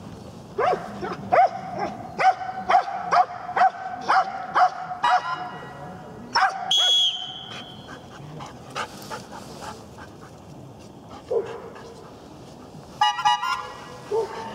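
A Belgian Malinois barking at a training helper, about a dozen sharp barks at about two a second over the first six seconds. A short high whistle blast follows about seven seconds in.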